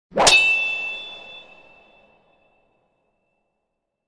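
A single metallic clang that rings on with a high bell-like tone and fades away over about two seconds: the sound effect of an intro logo sting.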